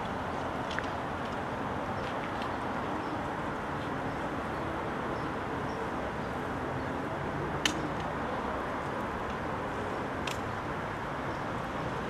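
Steady outdoor background noise with a few scattered sharp clicks, the loudest about two-thirds of the way through.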